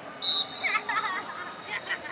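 A short, high referee's whistle blast about a quarter second in, the loudest sound here, followed by shouting voices echoing in a large hall.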